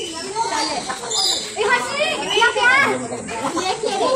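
Children's excited, high-pitched voices and chatter, rising in pitch between about one and three seconds in.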